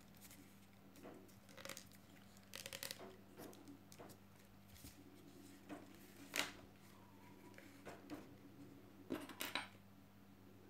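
Faint rustling and scattered light clicks of stiff rolled-newspaper tubes being woven by hand around a glass jar, the tubes brushing against one another and tapping the glass. The sharpest click comes about six seconds in, with a short cluster near the end.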